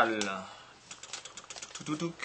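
Newspaper crackling and rustling in a quick, irregular run of small clicks as it is rolled around a clear tube.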